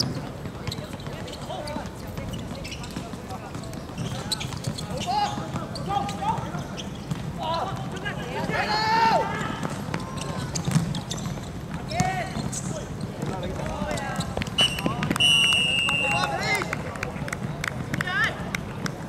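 Small-sided football match on a hard outdoor pitch: players shouting to each other and the ball being kicked several times. Near the end a short, steady referee's whistle blows as a goal is scored.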